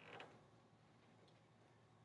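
Near silence, with a faint squeak of a dry-erase marker on a whiteboard in the first fraction of a second.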